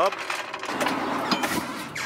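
Hydraulic floor jack being worked to lift the car: a steady mechanical noise with a few short high squeaks partway through.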